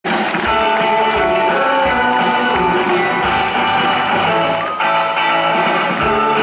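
Live rock and roll band playing, with electric guitars and held brass-section chords over a steady drum beat.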